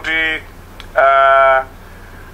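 A man's voice holding two drawn-out hesitation sounds ("eh"): a short one at the start and a longer one about a second in, each at a steady pitch. It comes through a narrow, phone-like sound, over a low steady hum.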